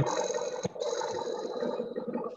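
Steady background noise and hiss coming through an open microphone on a video call, with faint fixed high tones and a single click about two-thirds of a second in.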